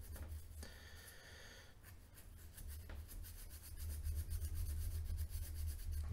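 A strip of sandpaper rubbing through the bore of a small steel part from a seized manual can opener, cleaning out the rust: a faint dry scratching, briefly louder about a second in.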